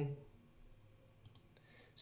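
A few faint computer mouse clicks over near-quiet room tone while a menu is opened in trading software.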